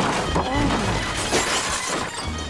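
Action-film gunfight sound effects: sharp impacts and shattering as shots tear into the wood and furnishings of a room, over a music score. A second loud crash comes about one and a half seconds in.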